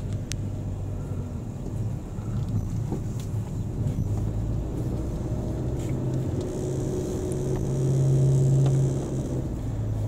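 Car engine and road noise heard from inside the cabin of a slowly driven car. The engine hum grows louder and stronger about seven seconds in, then eases off near the end.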